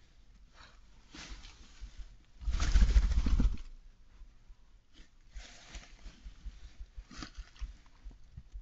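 Badger cubs moving about in straw bedding, rustling and shuffling, with one louder low rumbling burst lasting about a second a little before the middle.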